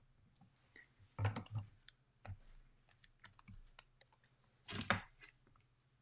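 Soft clicks and taps of craft tools being picked up and set down on a work desk, the loudest a rustling knock about five seconds in.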